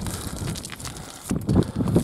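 Footsteps crunching and scraping on loose scree rock during a steep climb, irregular and louder in the second half, with wind buffeting the microphone.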